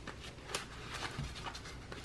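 Paper bills and a clear plastic cash envelope rustling and crinkling as they are handled, in quick irregular crackles with a sharper crinkle about half a second in.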